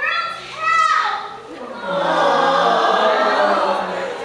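A high voice calls out and falls in pitch within the first second. Then several voices sing together on a held, wavering note for about two seconds.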